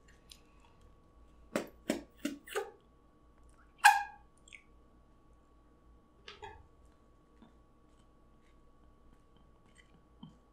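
Close-up chewing of a breaded fried chicken sandwich: four quick crunches, then a louder mouth sound about four seconds in and a faint one later.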